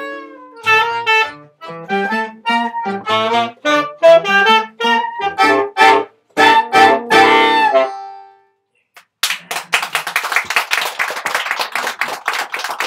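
Closing bars of a live quartet of two saxophones, accordion and acoustic guitar: a held accordion chord fades, then the ensemble plays a run of short, separate staccato chords, ending on a longer chord about 7 to 8 seconds in. After a moment's silence a small audience applauds.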